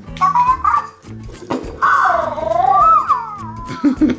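Lil' Gleemerz interactive toy making high, warbling creature sounds: a few short chirps, then a long wavering call about two seconds in that slides down near the end, over background music.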